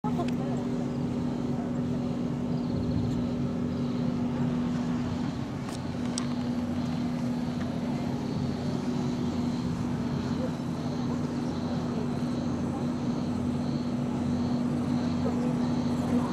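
A steady machine hum holding one unchanging pitch, with a faint high tone pulsing evenly about one and a half times a second, over distant voices.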